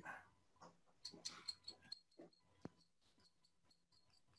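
Faint scraping of a hobby knife blade across a stick of pastel chalk, shaving chalk dust onto a sheet of glass, in a few short strokes over the first two seconds, with one sharp little tap a moment later.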